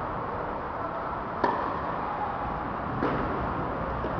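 Two sharp knocks of a tennis ball, about a second and a half apart, the first the louder, over the steady hum of an indoor tennis hall.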